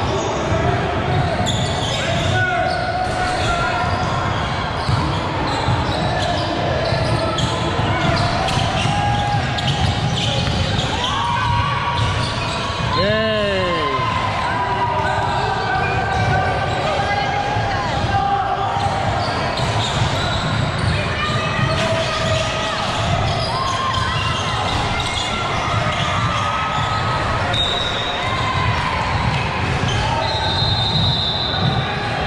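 Basketball game on a hardwood gym floor: a ball dribbling and bouncing, mixed with players' and spectators' voices, echoing in the large hall.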